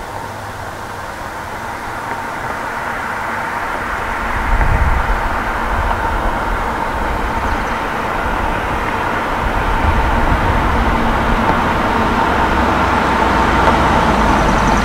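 Chevrolet 305 Tuned Port Injection V8 (LB9) with a Lunati Voodoo flat-tappet cam, heard from the roadside as the third-gen Camaro drives toward the microphone. It grows steadily louder as the car approaches, with a brief deeper surge about four and a half seconds in.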